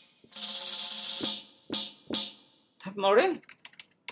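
Percussion samples from a Logic Pro percussion kit tried out one at a time: a shaken, tambourine-like rattle lasting about a second, then two separate struck hits, then a short pitched sound that slides up and down. A few light clicks follow near the end.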